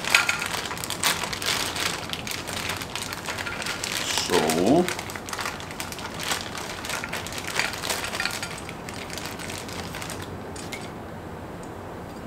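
Clear plastic parts bag crinkling and rustling as it is torn open and handled, with many small crackles that die down near the end. A short voiced hum is heard about four and a half seconds in.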